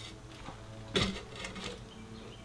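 A bungee strap being stretched and hooked around a plastic gallon jug on a steel hand truck: a sharp click about a second in, then a few lighter rattles, over a faint steady hum.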